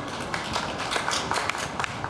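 Scattered clapping from a small crowd: a few people applauding in uneven, separate claps.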